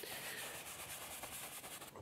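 One-inch paintbrush scrubbing paint onto a stretched canvas: a faint, steady dry rubbing.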